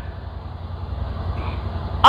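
Steady low background rumble with a faint hiss in a pause between spoken sentences.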